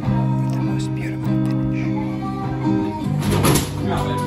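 Acoustic guitar and harmonica playing a tune together, the harmonica holding long steady notes, with a brief rush of noise a little after three seconds.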